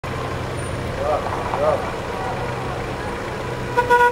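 Street traffic: a vehicle engine running steadily, with a short car horn toot near the end.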